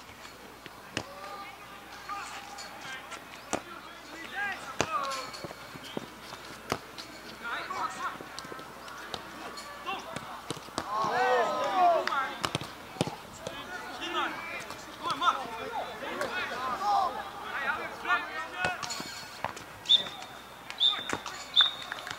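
Outdoor amateur football match: distant shouts from players and spectators, loudest about halfway through, with occasional sharp thuds of the ball being kicked. Near the end, three short high whistle blasts from the referee's whistle.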